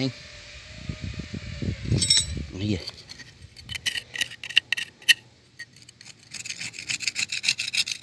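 A steel blade scraping caked mud and sand off a Yanmar B8 engine's gasket face in repeated strokes. The first few seconds are heavier, duller rubbing. Then come lighter, quicker scrapes with a couple of sharp clicks.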